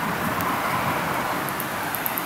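Steady outdoor ambience: an even rushing of wind with distant city traffic, with no clear events.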